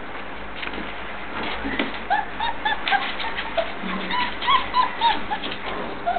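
Border Collie puppy whining in a quick run of short, high, squeaky cries, starting about two seconds in, with a few light clicks around them.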